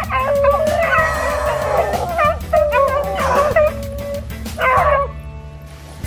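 Pack of beagles baying on a hare's scent: long drawn-out bawls mixed with short yelps, from more than one dog. It dies down after about five seconds.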